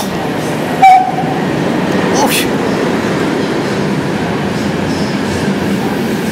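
Electric-hauled passenger train passing through a station, with one short horn toot about a second in, then the steady rumble of the coaches rolling past.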